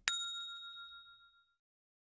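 A single bright bell ding, the notification-bell sound effect of an animated subscribe button, ringing out and fading away over about a second and a half.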